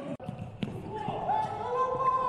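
Handball game sound in an empty hall: a ball bouncing on the court floor with a sharp bounce about half a second in, amid players calling out.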